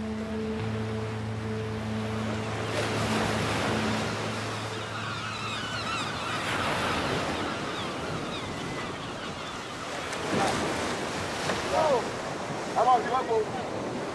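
Ocean surf breaking on a beach, a steady wash throughout. A low steady hum is heard for the first five seconds or so, with wavering high cries around the middle and a few short shouts or calls near the end.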